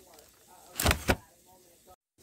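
Handling noise from a paper shopping bag and its contents, with a short, loud double knock about a second in; faint voices in the background.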